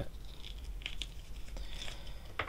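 Small clicks and brief scraping of hard plastic as a clip-on plastic armor piece is worked off an action figure's leg by hand.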